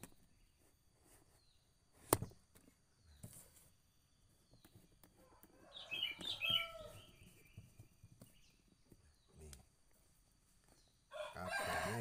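A sharp click about two seconds in and a few faint clicks of handling, then a short bird call about six seconds in.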